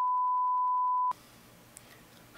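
A single steady beep tone dubbed over the interview audio to bleep out a spoken word, blanking all other sound while it lasts; it cuts off sharply just past a second in, leaving faint room noise.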